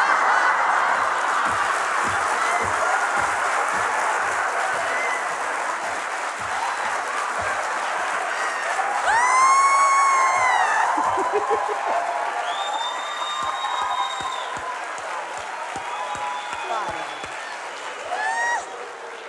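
Studio audience applauding after a punchline, with a loud voiced whoop rising over the clapping about nine seconds in. The applause then slowly dies away.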